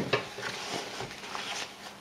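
Scissors cutting open the back seam of a metallic snakeskin-look boot shaft, with a sharp click at the start and then a few soft snips and the rustle of the stiff material being handled.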